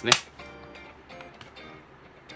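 A single sharp snap from a Canon EOS film SLR body being handled, just after the start, then faint background music.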